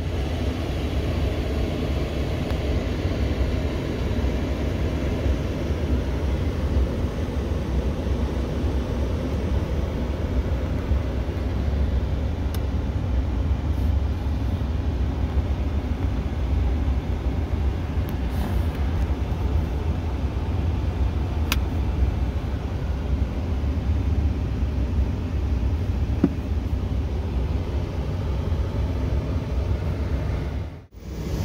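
Steady low rumble and hiss inside the cab of a 2019 Ford F-150 Lariat with the truck switched on, with a few faint clicks along the way.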